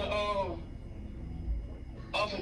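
A person's voice drawing out one syllable that falls in pitch in the first half second, then low room noise with a faint steady hum.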